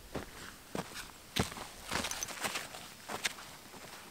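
Bare feet stepping on sandy ground close by, one footstep about every half second, with the loudest step about one and a half seconds in.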